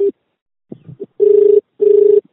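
Telephone ringback tone of an outgoing call still ringing on an Indian phone network: a steady low tone in a double pulse, two short beeps close together about a second in, with a few short, fainter blips before it.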